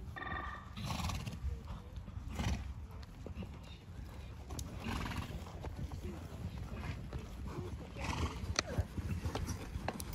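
Hoofbeats of a ridden horse moving over a sand arena surface, with a short whinny at the very start.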